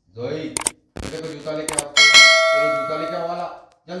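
Subscribe-button animation sound effect: a couple of sharp clicks, then a bright bell ding about two seconds in that rings out for about a second.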